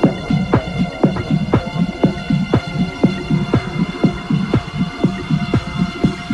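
Techno track with a steady four-on-the-floor kick drum at about two beats a second, a throbbing bassline pulsing between the kicks, and a held synth drone. A brighter synth layer comes in a little past halfway.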